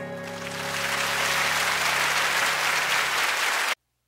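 Concert audience applauding as the band's last held chord dies away; the applause swells over the first second, then cuts off abruptly near the end.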